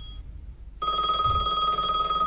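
Electronic call ringtone of an incoming Skype call: a steady high tone that breaks off about a quarter second in, leaving a short gap, and sounds again just under a second in.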